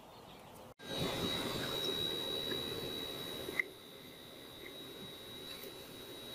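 Room humidifier running: a faint steady hiss with a thin high whine, starting about a second in. The hiss drops lower about halfway through while the whine carries on.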